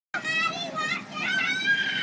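Children's high-pitched voices shouting and squealing at play, with one long held call in the second half.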